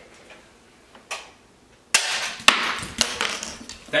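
Nerf dog-treat blaster being fired, with sharp snaps and knocks as the hard plastic-like treats land and skitter on a hardwood floor. A run of smaller clicks follows as the dogs scramble after them, their claws on the wood.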